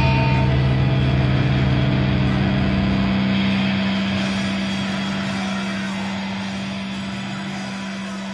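Distorted electric guitar and bass amplifiers holding a low droning note as a metal song rings out, slowly fading; the deepest bass drops out about three seconds in.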